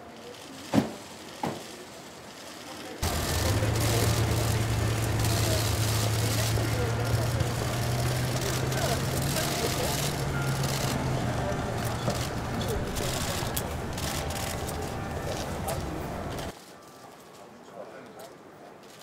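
Outdoor ambience with indistinct voices, many sharp clicks and a steady low engine hum, which starts abruptly about three seconds in and cuts off shortly before the end. Before it, two short knocks.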